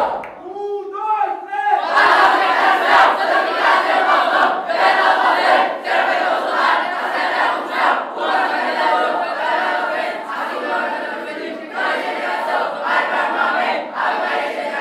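A group of young boys' voices chanting and shouting together as a team cry. A few voices start it, and the whole group joins in loudly about two seconds in.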